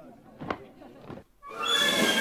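A few short, sharp call-like sounds from the symphony's pre-recorded tape part, then a brief hush and a sudden loud entry of the full orchestra about one and a half seconds in.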